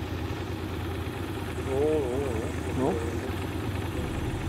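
Motorcycle engine running at low revs with a steady low rumble, the bike idling or creeping through slow traffic. A man's voice speaks briefly past the middle.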